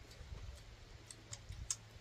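Faint eating noises at a table: a few scattered small clicks, irregular and high, over a low steady rumble of wind on the microphone.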